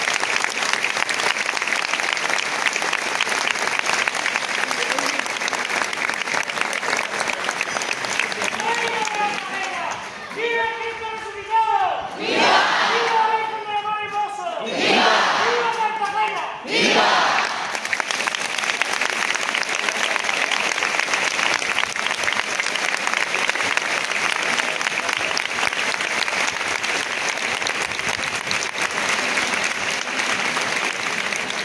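A large crowd applauding steadily. From about a third of the way in, a loud raised voice calls out over the clapping for several seconds, then the applause carries on alone.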